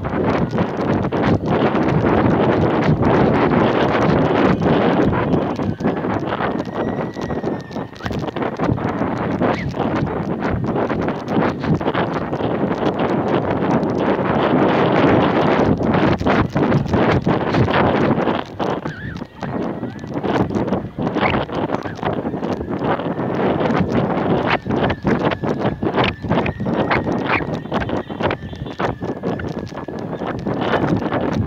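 Wind buffeting the microphone of a camera carried aloft on a kite: a loud, continuous rush broken by fast, irregular rattling knocks as the rig shakes. A faint high whistle comes and goes.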